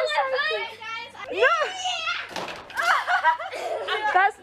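Children's high-pitched shrieks and laughter, with excited calls from adults, overlapping and never pausing. A short rush of noise comes about halfway through.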